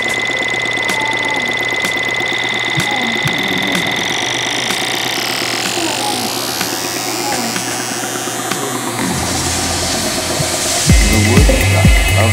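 Minimal techno track in a breakdown without its kick drum: a held high synth tone over light ticking percussion, the tone dropping out about halfway. A swelling noise sweep builds, then a heavy kick drum comes back in about a second before the end, at about two beats a second.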